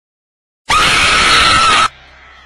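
Jump-scare scream sound effect: a loud, shrill shriek that starts suddenly out of dead silence about two-thirds of a second in, holds one pitch for about a second, and cuts off abruptly.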